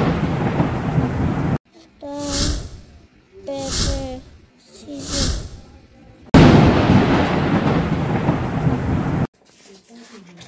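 A thunder-like crash sound effect, a sudden loud rumble with a long noisy tail, plays twice: at the start and again about six seconds in. Each one is cut off abruptly. Between the two, a voice gives three short calls about a second and a half apart, the 'stone, paper, scissors' count.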